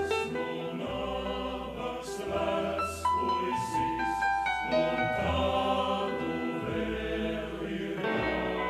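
A choir singing with a symphony orchestra, in long held chords over a steady bass line.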